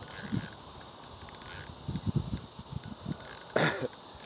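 Fishing reel being cranked, its gears clicking in short runs as line is reeled in on a hooked alligator.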